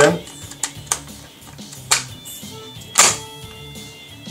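Magazine being fitted into an M4-style paintball marker's magazine well: three sharp clicks and knocks about a second apart, the loudest near the end, over quiet background music.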